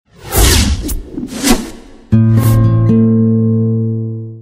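TV channel logo ident: two whooshes, then a loud held chord that comes in suddenly about two seconds in, gains a further note and slowly fades.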